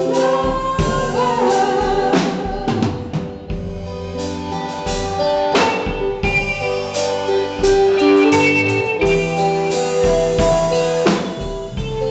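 Live band playing: electric guitar, electric bass and drum kit, with a woman singing in the first couple of seconds, then the band carrying on without vocals.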